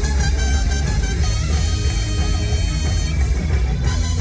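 Live rock band playing loudly with electric guitars, recorded from within the crowd in a club.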